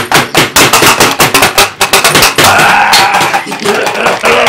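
Loud, distorted knocks and thumps in quick, irregular succession: handling noise from a camera being shaken and banged about. A man's voice yells briefly between them, most clearly about two and a half seconds in.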